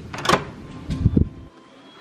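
Hotel room door being unlocked at its electronic card-reader lock and opened: a sharp click, then a cluster of clunks from the handle and latch about a second in.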